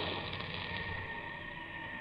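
Radio-drama storm sound effect: a low, steady wind howl, slowly fading.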